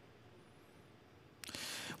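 Near silence for over a second, then a soft, even hiss of noise for about the last half second.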